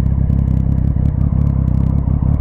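Motorcycle engine idling steadily, with a low, even hum.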